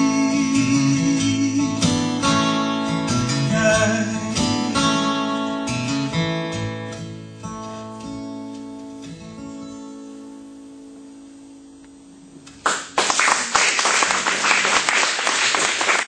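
Acoustic guitar strumming the closing bars of the song with harmonica played over it. The final chord rings and slowly fades away. Near the end, audience applause breaks out suddenly.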